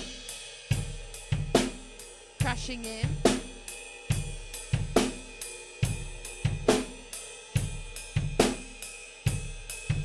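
Acoustic drum kit playing a slow rock groove on the ride cymbal, with bass drum and snare, a strong hit landing a little under once a second.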